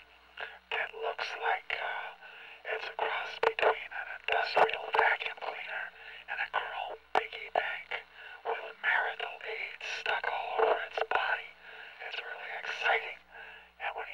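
A man's whispered spoken narration, thin and tinny with no bass, as through a small megaphone, in short phrases with brief pauses.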